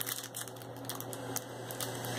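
Clear plastic packaging crinkling and rustling as it is handled, with many small irregular clicks.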